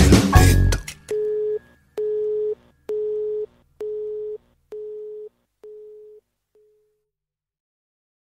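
The song's music ends about a second in, followed by a telephone busy tone after the call is hung up: seven short beeps of one steady pitch, about one a second, growing fainter until they stop.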